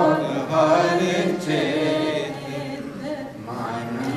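A man's voice singing a Sikh devotional chant in long, gliding sung phrases, with a steadier lower layer of sound beneath.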